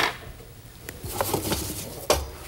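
Light handling noise of small cardboard-tube fireworks being gathered up from a counter: a sharp knock at the start, then a few soft clicks and rustles from about a second in.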